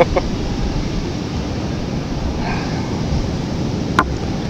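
Wind buffeting the microphone over the wash of surf: a steady rushing noise, strongest in the low end.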